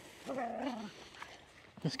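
A playing dog gives one short whining call lasting a little over half a second.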